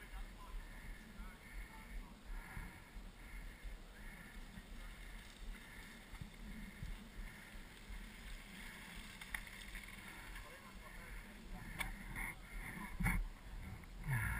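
Faint distant voices over low trailside background noise. A mountain bike rolls past on the loose rocky trail, and there are a few sharp knocks near the end.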